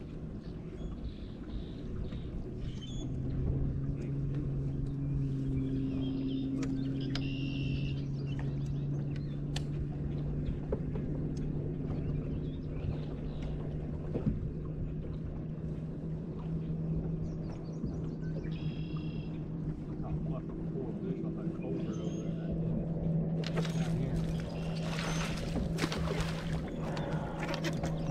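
Bass boat's bow-mounted electric trolling motor humming steadily, its pitch stepping up slightly around the middle as the speed changes. Near the end a splashy rushing noise comes in as a hooked bass is brought to the boat.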